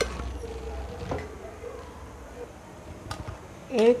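Melted butter with a pinch of salt and garam masala sizzling faintly on a hot iron tawa over a gas burner, with a few light clicks.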